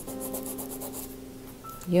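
A Rembrandt pastel stick rubbed back and forth on Canson Mi-Teintes Touch sanded pastel paper, making a dry, scratchy rubbing in short strokes.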